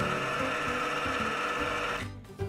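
Oster stand mixer's motor running steadily, its wire whisk beating whole eggs to a foam in the steel bowl. The sound cuts off abruptly at the end.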